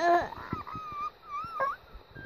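A baby's high-pitched, wavering squeal, thin and drawn out after a short babble at the start, with a few soft handling knocks.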